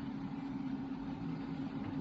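Steady, even machine hum from the IPS-C210 continuous inkjet printer, running with no change in pitch.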